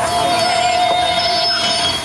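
A sustained high-pitched tone from the simulator ride's film soundtrack. It holds steady for nearly two seconds and then stops, with a fainter shimmer of higher tones above it.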